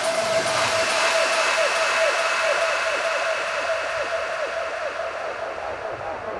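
Beatless breakdown in an electronic dance music DJ set: a held synth tone with many short falling pitch sweeps over a steady wash of noise, easing off slightly in level.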